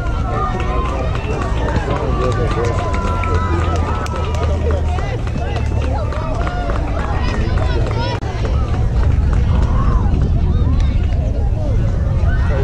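Several people talking at once nearby, overlapping voices with no clear words, over a steady low rumble.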